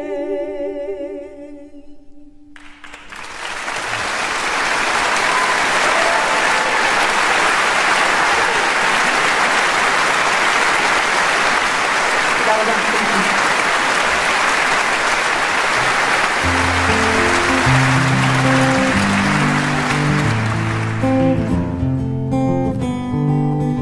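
Two women's voices hold the last sung note of a duet, with vibrato, and it fades away in the first two seconds. An audience then applauds steadily, and about sixteen seconds in a steel-string acoustic guitar begins picking a slow introduction under the applause.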